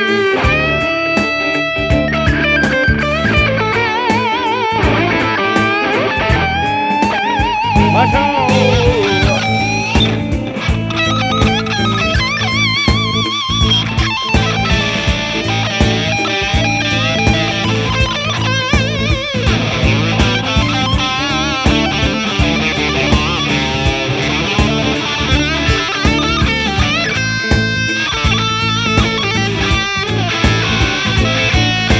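Sterling by Music Man AX3FM electric guitar with humbucking pickups playing an amplified lead solo, a single melodic line with string bends and wide vibrato. It is played over a backing track with bass and drums.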